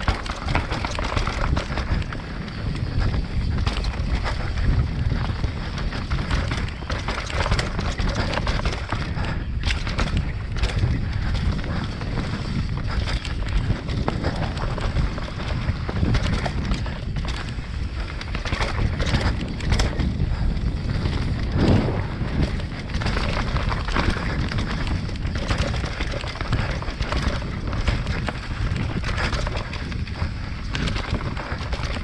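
Mountain bike riding down a rooty dirt trail, heard from a camera on the bike or rider: a continuous low rumble of tyres and wind on the microphone, with frequent knocks and rattles as the bike goes over roots and bumps.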